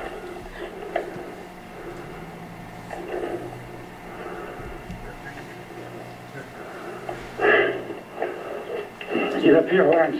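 Soundtrack of handheld camcorder footage playing through a TV speaker: indistinct voices come and go over a steady low hum, louder about three seconds in, at about seven and a half seconds, and near the end.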